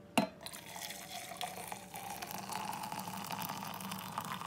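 Water poured from a stainless steel kettle into a stainless steel French press, a steady splashing pour whose pitch rises slowly as the press fills. A sharp metal clink sounds just as the pour begins.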